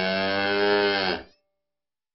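A cow mooing: one long call that dips slightly in pitch and stops about a second and a quarter in.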